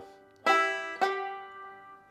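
Five-string banjo picked: two plucked notes about half a second apart, each ringing on and fading. The slide and picking timing are off, by the player's own account.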